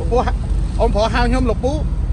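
Men talking in Khmer over a steady low rumble.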